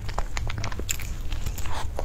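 Close-up eating sounds of a person biting into and chewing soft durian crepe cake: a scatter of short, moist mouth clicks.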